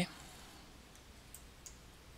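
Two faint computer mouse clicks in quick succession, about a second and a half in, over a low hiss.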